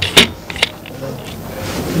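A sharp click about a fifth of a second in, then a few fainter clicks, followed by low room noise.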